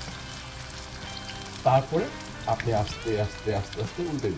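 Battered pumpkin flowers deep-frying in hot oil in a wok, a steady sizzle with fine crackling. From a little under two seconds in, a voice speaks over it in short bursts, louder than the frying.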